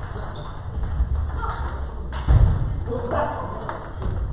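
Table tennis balls clicking sharply and irregularly off bats and tabletops during rallies on several tables, with voices in the hall.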